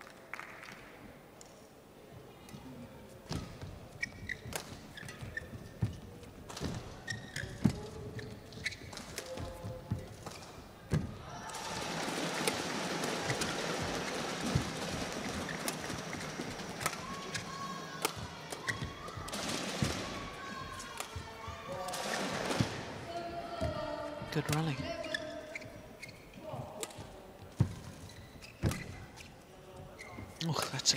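Badminton singles rally: the shuttlecock is struck back and forth by rackets with sharp smacks, among shoe taps on the court floor. About eleven seconds in, a swell of cheering and shouting rises for several seconds, with shorter bursts of it later on.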